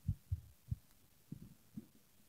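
Microphone handling noise: about six faint, irregular low thumps and bumps on a live handheld microphone while it is passed or picked up.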